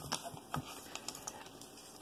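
Handling noise from a painted pumpkin sign with a raffia bow being turned in the hands: a few small scattered clicks and ticks, the sharpest about half a second in.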